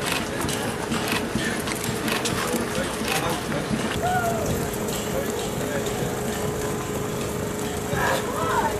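Footsteps of many runners on pavement, mixed with spectators' voices and cheering, over a steady low tone.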